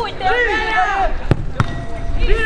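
A football being struck during play on artificial turf: two sharp thuds about a third of a second apart, a little over a second in. Players shout just before.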